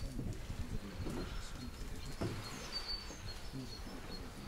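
Birds calling outdoors: a few short, high chirps scattered over a steady low rumble.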